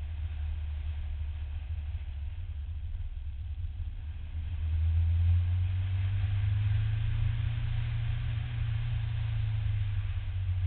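Nissan Silvia S13 driven at speed through an autocross course, heard from a camera mounted on the hood: a continuous low rumble of engine and road that grows louder about halfway through as the car picks up pace.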